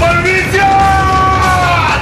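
A person's voice in a long drawn-out yell, held on one pitch and falling away near the end, over background music with a low steady beat.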